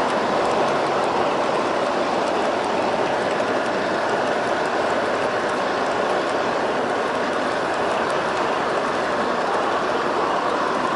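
Streamlined G scale model passenger cars rolling past close by on outdoor garden-railway track: a steady rolling noise of metal wheels on the rails.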